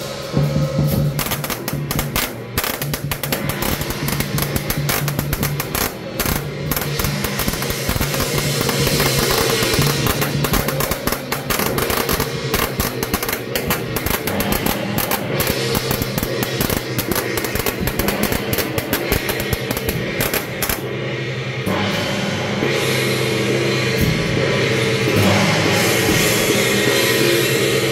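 Temple-procession percussion: a drum, a large gong and hand gongs beaten together in a fast, driving rhythm, with a dense clatter of rapid sharp strikes throughout.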